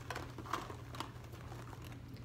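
Faint crinkling of a see-through red plastic makeup bag being handled, with a few light clicks, about half a second and one second in, of small cosmetics being packed into it.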